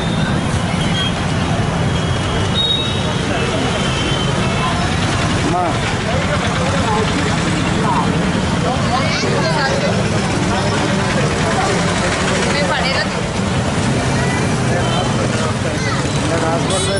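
Steady street traffic noise with the voices of a crowd talking over it.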